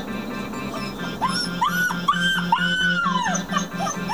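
A young Labrador retriever puppy on a leash whining: a run of about five high, rising-and-falling whines starting about a second in. Background music with a steady low pulse runs underneath.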